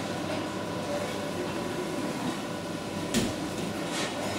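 Steady hum and hiss of kitchen ventilation, with a single sharp knock about three seconds in.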